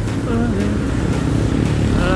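Steady low rumble of wind and road noise on a camera riding along on a bicycle, with a short snatch of a voice gliding in pitch about half a second in.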